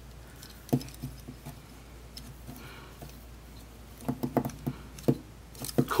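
Hard plastic toy parts clicking and knocking as they are handled: a single click about a second in as the club accessory is pushed into the robot figure's fist, then a quick cluster of clicks near the end.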